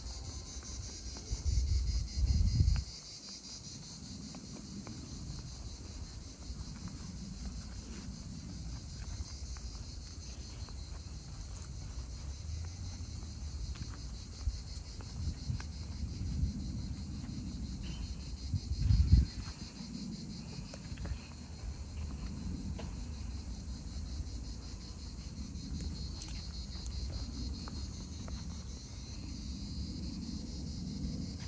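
A steady, high-pitched chorus of insects chirring. Low rumbles of wind on the microphone, the loudest sounds, come about two seconds in and again just past the middle.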